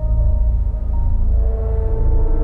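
Dark, tense background score: a deep steady drone under held ringing notes, with a new chord of notes coming in partway through.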